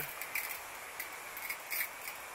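Solo pressurised hand-pump garden sprayer misting a liquid foliar spray onto plant leaves in a couple of brief, quiet hisses.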